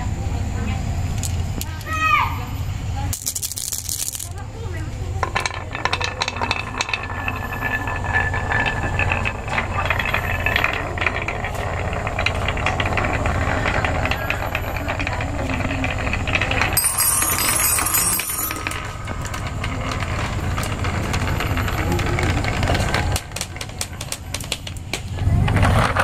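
Glass marbles rolling down a carved wavy groove in a wooden board, rattling and clicking against the wooden walls in a continuous clatter, with a brief falling tone about two seconds in.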